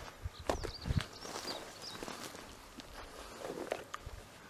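Footsteps of a person walking down a grassy slope through brush, heaviest in the first second and lighter afterwards, with a few faint high chirps in the first half.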